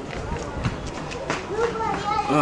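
Quiet speech: a man's voice in short low phrases over outdoor background noise.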